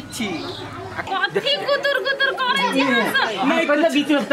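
Speech only: people talking in dialogue. A low background hum under the voices cuts off about a second in.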